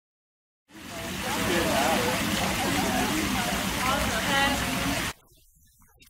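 Voices over a loud, even rushing noise that starts about a second in and cuts off suddenly about a second before the end.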